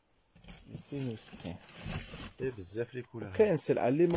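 Speech: a voice talking indistinctly after a brief pause at the start.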